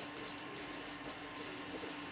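A pen writing a word on paper in quick, short scratchy strokes.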